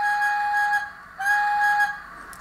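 DCC sound decoder in a model GWR steam locomotive, No. 2859, playing its steam whistle: two steady blasts with a short gap between them, the second one shorter.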